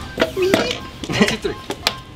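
Men's voices and laughter, with a few short clicks or knocks in the second half.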